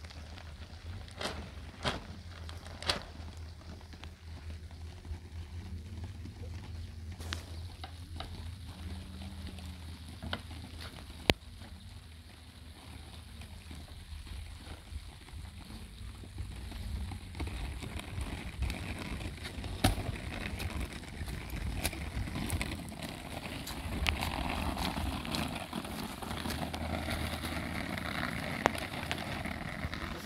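Plastic sheeting rustling and crackling as it is handled on a roof, louder in the second half, with a few sharp knocks of wood on it, over a steady low rumble.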